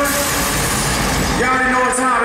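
Loud, even, noisy roar of a live hip-hop show, with no clear voice or beat standing out of it.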